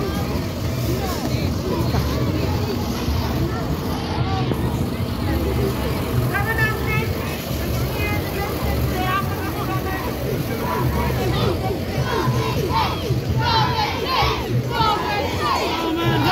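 Farm tractor's diesel engine running with a steady low rumble as it passes close by. Voices of the crowd run over it, with children shouting from about twelve seconds in.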